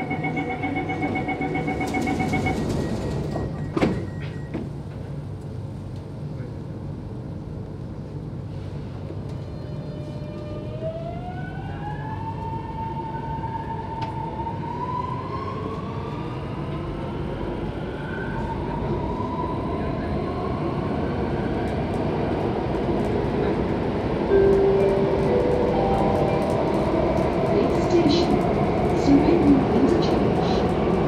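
Door-closing warning beeps on an Alstom Metropolis C751C metro train, then the doors shut with a sharp knock about four seconds in. The train then pulls away, its traction motors whining in several tones that climb in pitch as it accelerates, over rumbling running noise that grows louder.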